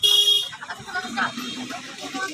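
A loud horn-like toot for about the first half second, then voices talking.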